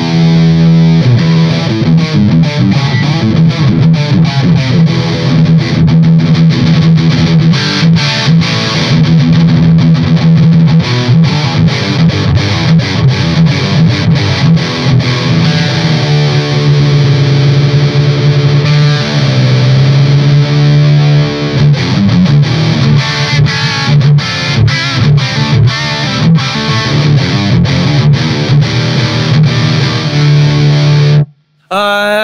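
Distorted electric guitar played through a Soldano SLO 100 tube amp head, cranked and brought down in level by a Fryette Power Station attenuator. A dense high-gain riff with sustained notes, with notes bent up and down around the middle.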